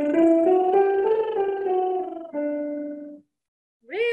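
A woman singing a lip trill, her lips buzzing as her voice steps up and back down a short scale over piano accompaniment. About two seconds in, a piano chord rings on alone and fades out.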